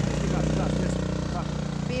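Rental go-kart engine idling steadily at the start line.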